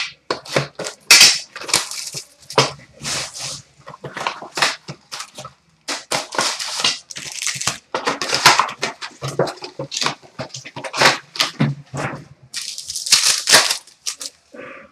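A trading-card hobby box and its packs being torn open: plastic wrap and pack wrappers crinkling and ripping in a quick, irregular run of crackles.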